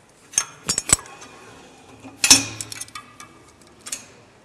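Metal clicks and clanks of a cable crossover machine's pulley and clip handle as the pulley is moved from the top of the column to the bottom: a few sharp clicks around half a second to a second in, then one louder clank that rings on briefly a little past the middle, followed by scattered lighter clicks.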